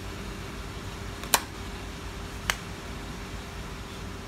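Two sharp clicks, the first louder, a little over a second apart, as a cover cap is pressed and snapped into the lock-cylinder access hole on the edge of an Acura MDX's front door, over a steady background hum.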